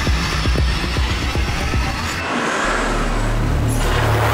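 Dramatic TV background score: a pulsing deep rumble that gives way about halfway to a held low bass drone, with a whoosh swelling up near the end.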